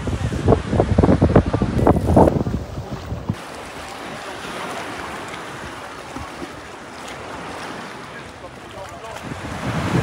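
Wind buffeting the phone's microphone for about the first three seconds, then a steady wash of sea water moving in the shallows.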